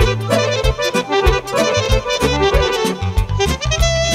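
Instrumental band music: a fast melody over a bass line and a quick, steady drum beat.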